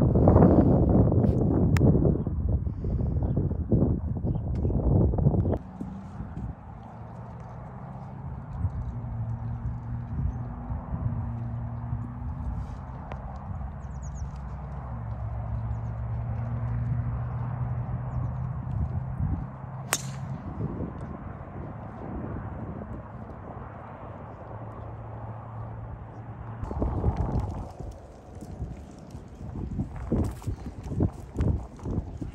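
Wind buffeting an outdoor phone microphone at first, then a steady low hum. About two-thirds through comes one sharp crack of a driver striking a golf ball off the tee.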